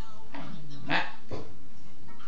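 A dog barking three times in quick succession, the second bark the loudest.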